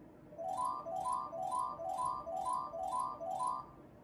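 Merkur slot machine's electronic win jingle: seven quick rising runs of bright beeping notes, about two a second, sounding while a 1400 win is counted up into the credit total.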